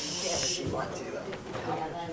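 A sharp hiss like a "shh" in the first half second, then indistinct murmuring voices of people in the room.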